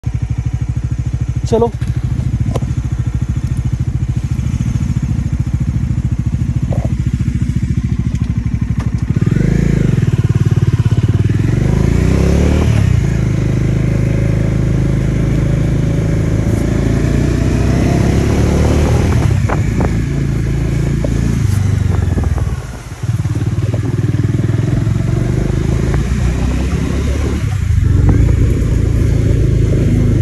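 Motorcycle engine running under way on a rough gravel road, heard from the rider's seat. Its pitch rises a few times as the bike picks up speed, with a brief drop in loudness about three-quarters of the way through.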